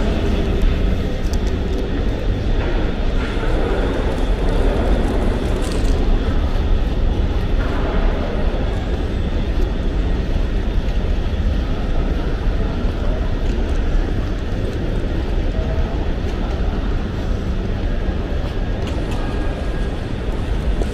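Steady ambience of a large, busy airport terminal hall: a continuous low rumble with a faint hubbub of people moving about.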